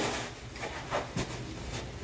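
Faint rustling and a few soft knocks as a stiff new leather Dr. Martens 2976 platform Chelsea boot is pulled on by hand.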